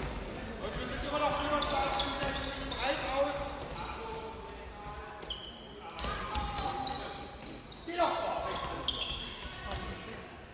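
Handball match in an echoing sports hall: players calling out to each other, with the ball bouncing on the wooden floor in scattered sharp thuds.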